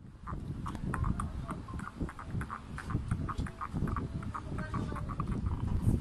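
Shih Tzu Chihuahua mix puppies suckling at their mother, rapid small wet clicks and smacks several times a second, over the low rumble of a phone microphone being handled close by.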